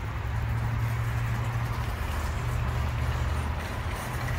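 Parking-lot traffic ambience: a steady low hum of vehicle engines under a constant haze of road noise.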